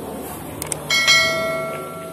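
Subscribe-button animation sound effect: a short click, then a bell chime about a second in that rings with several clear tones and fades away.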